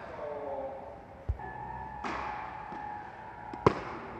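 Tennis rally: a dull thud about a second in, then a sharp crack near the end as a tennis ball is struck by a racket, the loudest sound.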